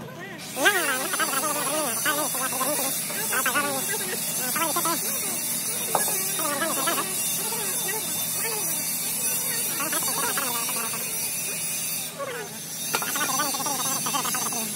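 People talking, over a steady high hiss that starts about half a second in.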